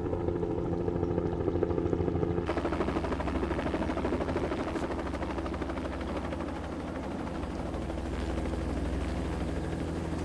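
Helicopter passing overhead, its rotor chopping in a steady, rapid beat. The sound grows fuller and hissier about two and a half seconds in.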